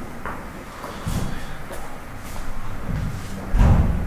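Two dull thuds, the louder one near the end.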